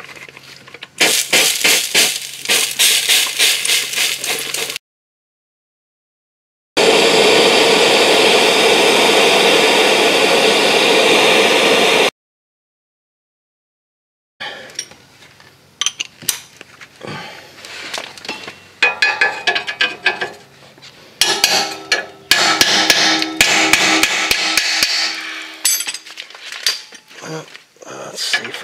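A MAPP gas torch hissing steadily for about five seconds as it heats a rusted catalytic converter flange bolt. After a short break comes an air impact wrench hammering in repeated bursts on the seized bolt, with metallic clatter between the bursts. The opening seconds hold a dense rattling clatter.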